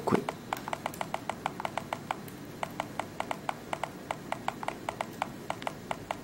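Touchscreen keyboard key-press clicks from a Windows Phone 7 phone, one short click per key tapped, coming quickly and unevenly at about six a second as a sentence is typed, with a brief pause partway through.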